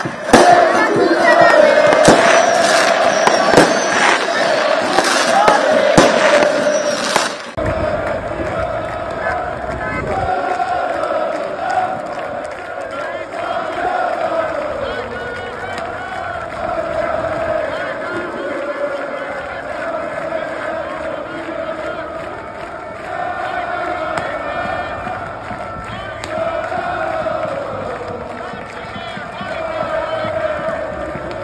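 Large crowd of football supporters chanting and singing, with several sharp bangs of firecrackers over the first seven seconds or so. The sound then changes abruptly to a somewhat quieter crowd singing a chant in unison.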